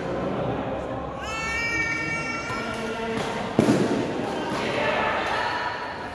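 Sounds of an indoor badminton doubles match: a drawn-out high squeal about a second in, then one sharp smack about three and a half seconds in, the loudest sound, over a steady murmur of spectator chatter echoing in the hall.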